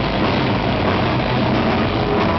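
Live rock band playing loud: a dense, steady wall of distorted electric guitars with drums underneath.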